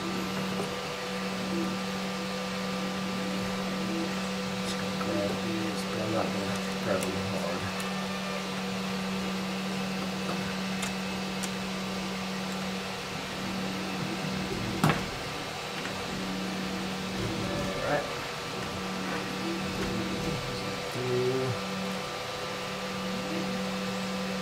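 A steady hum of several fixed pitches runs under small clicks and rustles of wiring and connectors being handled and plugged into the 3D printer's electronics, with one sharper click about fifteen seconds in.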